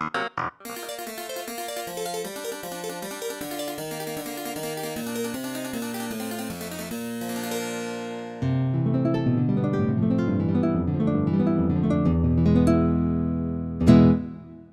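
KORG G1 Air digital piano playing a fast passage in one of its bright non-piano instrument voices. About eight seconds in, it switches to a louder, lower, fuller voice, which fades away at the end.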